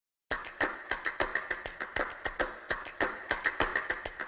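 A rapid, irregular series of sharp clicks, about five or six a second, starting abruptly just after the opening silence.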